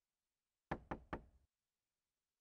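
Three quick knocks on a door, close together in under a second.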